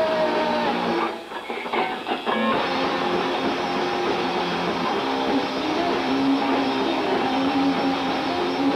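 Electric guitar played live through an amplifier in a rock band. A sliding note falls near the start, the playing breaks off briefly about a second in for a few separate chord hits, then the full band sound comes back.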